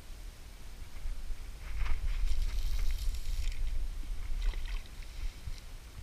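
A spinning rod being cast: rustling handling, then a short hiss of line running off the reel about two seconds in, over a low rumble.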